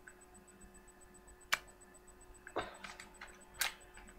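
Three clicks from the plastic parts of an M945 airsoft pistol being handled while its spring and slide are refitted: a sharp one a little before halfway, then two softer ones about a second apart.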